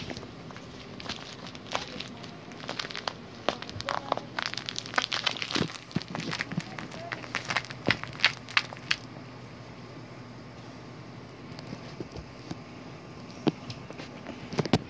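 A cat wrestling with a fuzzy plush toy, grabbing and kicking it: a quick run of crinkling, crackling rustles and claw clicks, thickest in the first half, then dying down. A steady low hum runs underneath.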